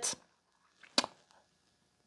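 A single short, sharp click about a second in, otherwise quiet room tone.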